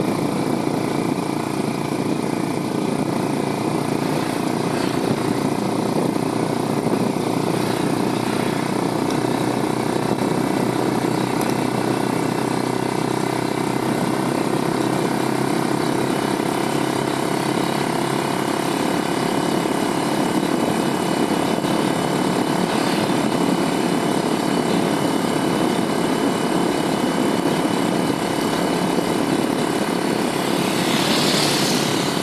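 Motorcycle engine running steadily while riding, heard from the rider's seat over a constant rush of road noise.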